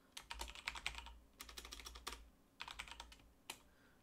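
Faint computer keyboard typing: three quick runs of key clicks with short pauses between them, then a single keystroke near the end.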